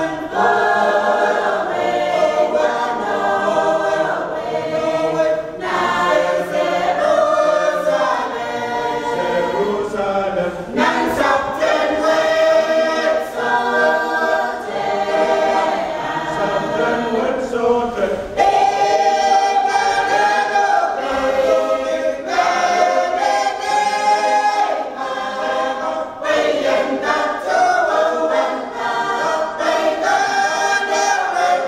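Mixed church choir of men and women singing a hymn together in phrases.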